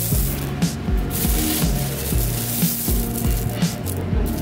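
Small tumble-polished green marble pebbles rattling and clinking as a handful trickles back onto a heap of them. Background music with a steady beat plays throughout.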